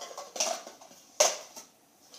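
Plastic party cups clacking lightly as they are picked up and set down on carpet, a few short taps with the loudest a little over a second in.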